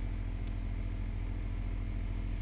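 Steady low buzzing hum of aquarium air-pump equipment, unchanging throughout.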